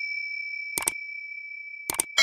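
Subscribe-button animation sound effects: a single high ding rings on and slowly fades, while mouse-click sounds come twice, once just under a second in and again near the end.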